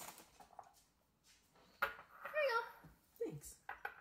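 A boy's voice speaking briefly, then a few light clicks and taps near the end as hands work at a small bowl on the table.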